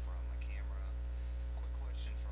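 Steady electrical mains hum, with a faint voice speaking quietly over it.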